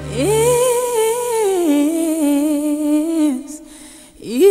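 A solo voice in a Christmas music track sings a wordless line. One long note with vibrato swoops up at the start, holds, steps down to a lower note about halfway through, and fades out near the end; the low backing drops away early on.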